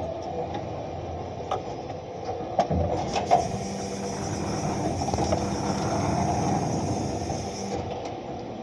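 Electric forklift running with a steady low hum. A higher hiss joins about three seconds in and stops just before the end. A few sharp knocks come between one and a half and three and a half seconds in.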